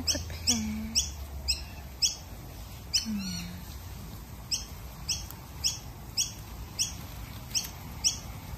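A bird chirping over and over, short high chirps at about two a second, with a pause in the middle. A soft low murmur is heard twice early on.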